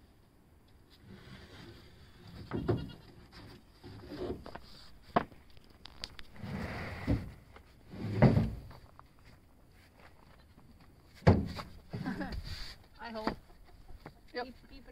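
Rough-sawn red oak boards being set down and stacked on a board pile, giving wooden clatters and knocks. The loudest knocks come about eight and eleven seconds in.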